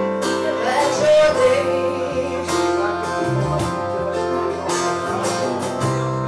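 A woman singing to her own strummed acoustic guitar.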